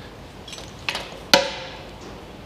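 Handling noise from a poppet-style hydraulic quick-connect coupler and its rubber dust cap: a few light clicks, then one sharp click a little over a second in.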